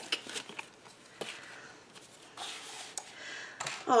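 Paper and cardstock being handled: a few light taps and a brief papery rustle as a folded cardstock photo folder is closed and set back into a handmade scrapbook album.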